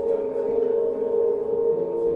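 Electric bass guitar played through effects and a looper: a slow ambient jam of layered, sustained tones like a singing bowl, shifting to new pitches near the end.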